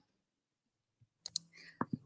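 Dead silence, then a few short sharp clicks in the second half, just before talking resumes.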